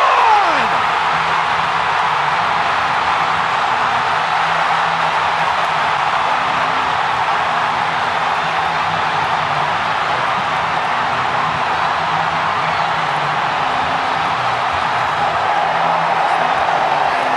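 Stadium crowd cheering a goal, a dense steady roar, slowed right down for a slow-motion replay.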